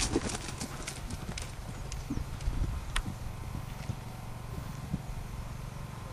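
A horse's hoofbeats cantering on a sand arena surface, heard as soft, uneven thuds, with a single sharp click about halfway through.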